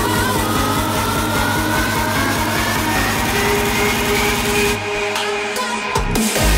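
Live hardstyle music on a festival sound system, in a build-up: a synth tone rises steadily in pitch over a fast drum roll. Near the end the bass and drums cut out for about a second before the drop.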